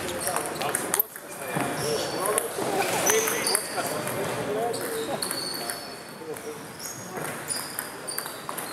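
A table tennis ball clicking off the bats and table, with a few sharp hits about a second in and more near the end. In between, voices carry through the large hall and a few short high squeaks are heard.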